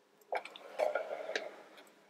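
Light clicks and rubbing of plastic parts as a toy tower crane's jib is turned by hand on its tower, starting with a sharp click.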